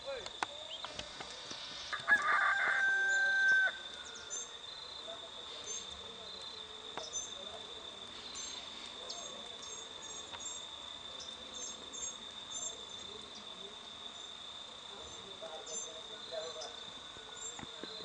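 A rooster crows once, about two seconds in: a single long call that holds its pitch and then drops, the loudest sound here. Under it, a steady high insect drone runs on, with small high chirps throughout.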